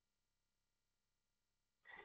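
Near silence: faint steady room tone between the presenter's sentences.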